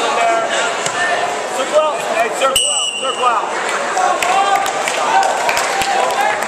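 Many voices shouting and talking in a gym, with scattered thuds. A short referee's whistle blast comes about two and a half seconds in.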